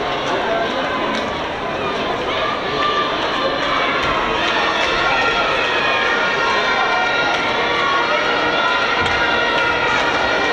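Crowd noise at an outdoor athletics track during a race: many voices talking and calling out at once, steady throughout.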